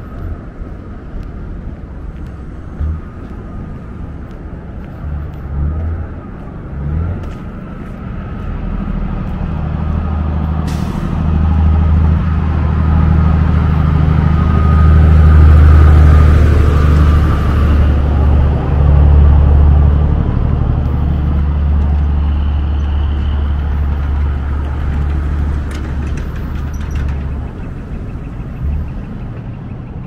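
A heavy road vehicle passing on the street alongside: a low rumble that grows over several seconds, is loudest about halfway through with a brief hiss and a faint whine, then slowly fades away.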